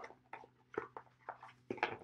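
A deck of oracle cards being shuffled by hand: a quick, uneven run of short card slaps and snaps.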